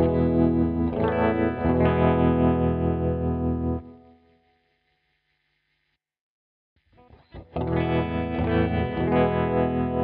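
Electric guitar played through GarageBand for iOS's amp and stompbox simulation, with ringing chords. There are two phrases of about four seconds each, with a few seconds of silence between them.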